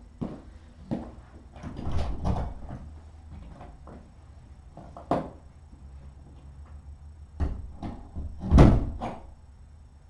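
A string of knocks and thumps from someone handling things out of view while cleaning a cat's litter box, like a door or cupboard being worked. The loudest thump comes a little before the end.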